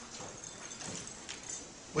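A pause in a man's amplified speech: faint room noise as his voice dies away, with a couple of faint clicks in the middle.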